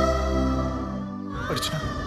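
Dramatic background score: sustained held chords that thin out about a second in, then a short falling swoosh-like sting past the middle, after which the held chord comes back.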